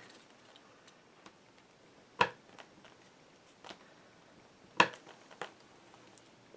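Sparse light taps and clicks of craft tools, a glue bottle and a bone folder, being handled on a tabletop, with two sharper taps about two seconds and five seconds in and a few fainter clicks between.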